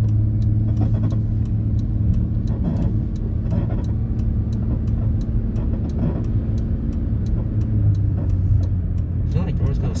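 Engine and road noise of a Chrysler sedan heard from inside the cabin while it is being driven uphill under throttle: a steady low hum whose tone shifts a little about eight seconds in.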